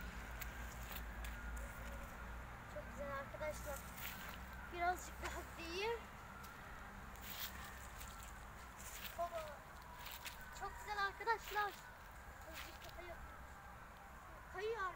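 Faint, indistinct voices, coming in short scattered bursts, with a few sharp clicks in between.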